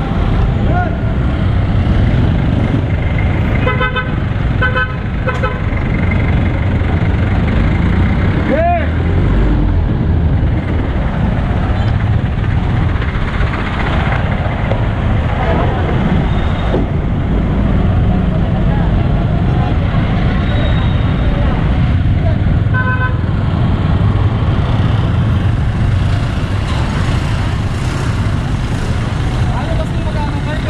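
Busy street traffic, with vehicle engines running as a steady low rumble. A few short horn beeps come about four seconds in, and another couple near three-quarters of the way through.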